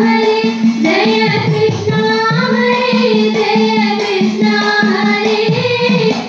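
A Thiruvathirakali song sung by a single voice, holding long notes in slow phrases.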